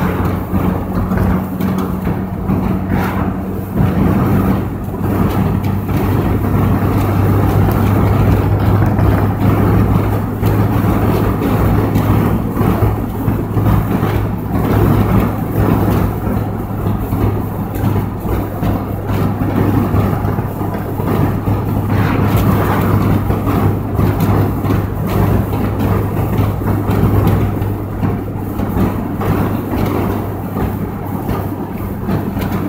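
Car driving at steady speed: a constant low engine drone under tyre and road rumble, heard from inside the cabin. A second, higher hum fades out in the first few seconds.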